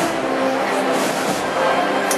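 Wind band of brass and woodwinds playing held chords under a conductor, full and steady.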